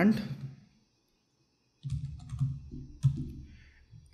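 A handful of keystrokes on a laptop keyboard: about half a dozen separate quick clicks spread over a second and a half, starting about two seconds in.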